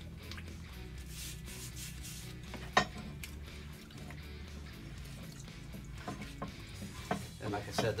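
Rusty steel Ford Model A bumper brackets clinking and knocking as they are handled in a plastic tub of acid solution after a 12-hour soak, with one sharp metal knock a little under three seconds in and a few lighter clicks later. Faint background music runs underneath.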